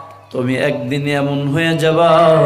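A man's voice chanting a Bengali waz sermon in a drawn-out, sung delivery with long held notes. It breaks off briefly at the start and comes back in about a third of a second in.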